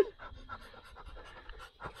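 Soft, irregular breaths and mouth sounds of a person eating roasted crab.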